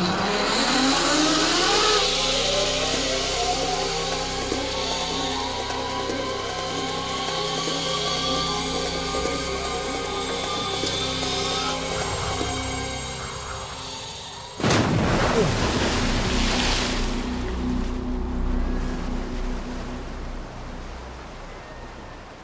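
Zip-line trolley running down the cable, its whine rising steadily in pitch as the rider gathers speed, over background music. About fifteen seconds in, a sudden loud splash as the rider drops into the lake, then churning water fading away.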